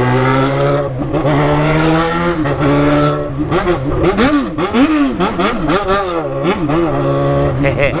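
Yamaha XJ6's inline-four engine through a straight-pipe exhaust, pulling steadily with its pitch slowly climbing. From about three and a half seconds in it is revved up and down several times in quick succession, then settles to a steady pull again near the end.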